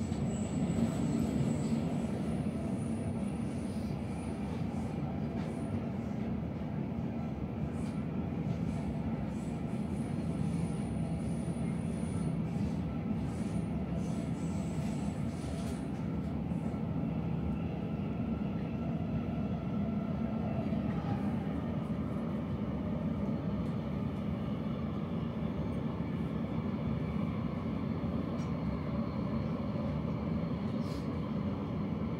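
Zurich S-Bahn electric commuter train running along the track, heard from inside the passenger car: a steady low rumble of wheels and running gear. A thin high-pitched whine comes and goes through the first half.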